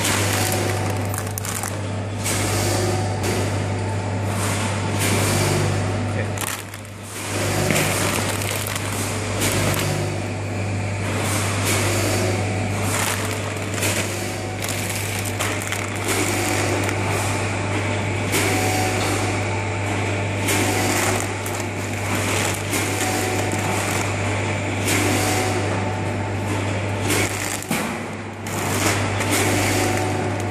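Bean packing machinery with a 14-head multihead weigher running: a steady low hum under a constant noisy clatter of frequent knocks and rattles.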